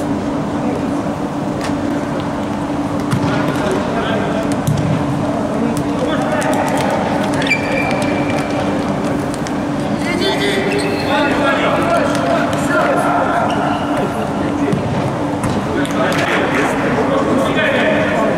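Indistinct voices and shouts echoing in a large indoor sports hall during a futsal game, with scattered sharp knocks of the ball being kicked.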